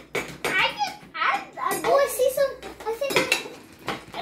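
Serving spoons and a slotted spatula clinking and scraping against a plate and bowls as popcorn is scooped up, in short irregular clatters. Children's voices and exclamations come in and out over it.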